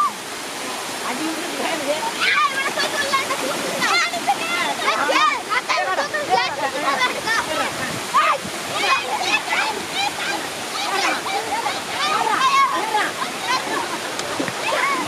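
Water pouring over a low concrete weir in a steady rush, with several excited voices shouting and calling over it throughout.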